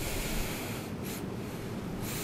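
Faint rustling of paper sheets handled at a lectern microphone over a steady hiss, with a short, slightly louder rustle about a second in.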